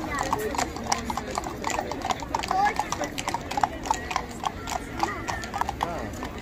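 Horses' hooves clip-clopping at a walk on an asphalt road: several horses passing, a quick, irregular run of sharp knocks, with crowd voices behind.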